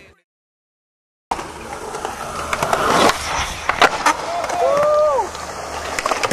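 About a second of dead silence, then skateboard wheels rolling on concrete with several sharp clacks of the board, and a brief voice call about five seconds in.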